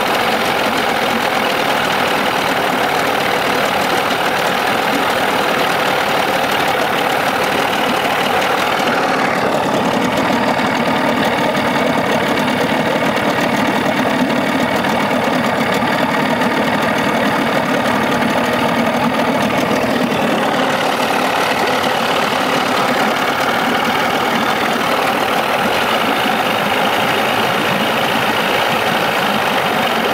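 Evinrude 25 hp outboard motor, cowling off, running steadily. It has been restarted with its thermostat refitted and the water cover back on under a new gasket, and is being run to check for leaks.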